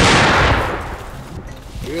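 A single big-game rifle shot fired at a Cape buffalo: one sharp crack, then a rolling echo fading over about a second and a half.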